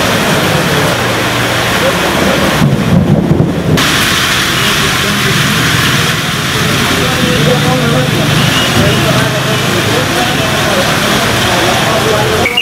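Heavy rain pouring onto a flooded street and standing water, a loud steady hiss of drops. About three seconds in there is a brief low rumble.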